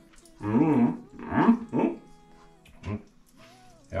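A man's drawn-out "mmm" sounds of approval while tasting food: a few low hums with wavering pitch in the first two seconds, then a short one near the end.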